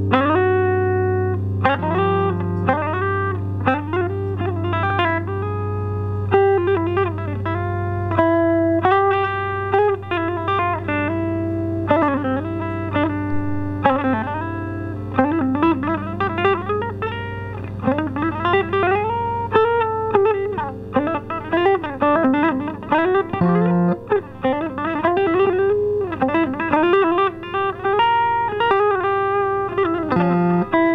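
Five-string Esquire electric guitar played through an amp and an Ampeg 8x10 cabinet, picking a repeating single-note riff with string bends. A low note keeps ringing underneath for the first half and fades out around the middle.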